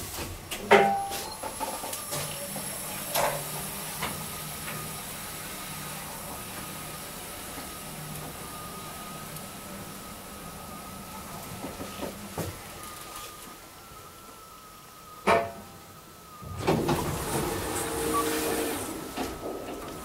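KONE MonoSpace traction elevator ride: the car doors shut with a loud click about a second in, then the car travels with a steady thin high whine and a low hum under it. A sharp click comes about 15 seconds in, followed by a louder rushing noise over the last few seconds as the car doors slide open.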